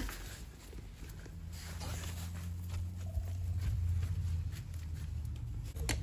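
Gloved hands pressing and patting loose potting soil around lemongrass stalks in a plastic pot: soft, scattered rustles and scrapes over a steady low hum.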